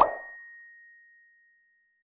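Editing sound effect on an end-screen animation: a single bright ding, like a notification bell, struck once at the start and ringing on one steady tone as it fades out over about a second and a half.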